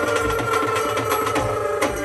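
Live Indian devotional bhajan music with no singing: a held melody note over fast, even drum beats.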